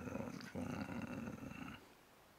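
A man's voice making a low rolling growl, a mouth imitation of a car engine purring at idle, which stops shortly before the end.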